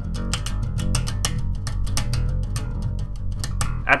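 Electric bass guitar playing a simple rock/metal line low on the E string, a fast, even stream of plucked notes moving between the second and third frets.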